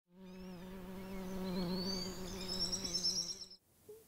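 A bee buzzing steadily on one low note, growing louder, with high chirping whistles joining about halfway through; both stop abruptly shortly before the end.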